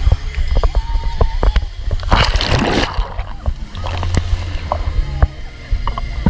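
Someone plunges into a swimming pool: a loud splash about two seconds in, followed by water sloshing. Sharp knocks from the handheld camera run throughout, over the low bass of party music.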